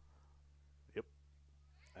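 Near silence with a steady low hum, broken about a second in by one short spoken word, "yep".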